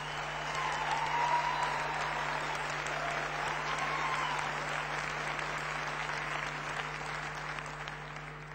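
Large audience applauding, swelling over the first second, holding steady and slowly easing off near the end.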